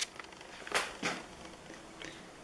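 Handling noise from a handheld camera being turned over: a sharp click at the start, then two brief rustles on the microphone about a second in.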